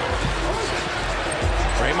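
Basketball dribbled on a hardwood court over steady arena crowd noise, with low thuds of the ball about half a second and a second and a half in.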